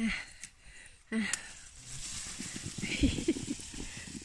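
Two short grunts of effort, then steady rustling with soft low knocks, loudest about three seconds in, as plums are gathered from among the leaves.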